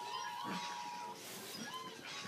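A Welsh corgi whining in excitement: a long, steady high-pitched whine that stops about a second in, with short rising-and-falling whimpers around it.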